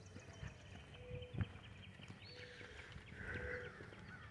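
Quiet outdoor ambience with a few faint footsteps on a concrete driveway, the clearest about a second and a half in, and a few faint short tones in the background.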